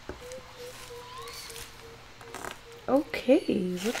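The tail of a lofi hip-hop backing track: a faint held note that fades out over the first two seconds. Then a woman's voice from about three seconds in.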